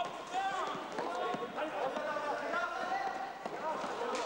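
Basketball being dribbled on a sports-hall floor during a game: a few sharp bounces among players' voices and calls.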